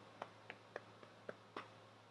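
Near silence with about five faint, short clicks spread through it.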